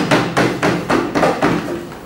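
Hands knocking on wooden desks as applause for a finished debate speech, a quick run of about five knocks a second that fades away near the end.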